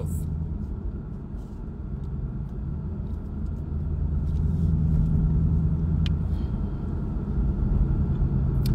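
Steady low rumble of engine and road noise inside a moving car's cabin, growing a little louder midway, with one faint click.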